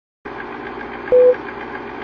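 Film-countdown leader sound effect: a steady projector-style rattle with rapid ticking, and one short loud beep about a second in marking a count.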